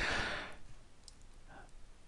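A man's audible breath, about half a second long, with no voicing.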